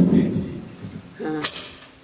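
A single sharp thump right at the start with a short decaying ring, then a brief voice sound about a second and a half in.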